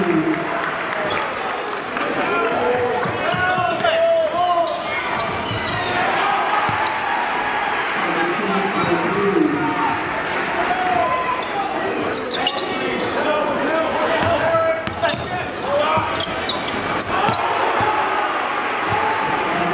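Live game sound in a gym: a basketball bouncing on the hardwood and sneakers squeaking as players run, over constant crowd voices and shouting in the hall.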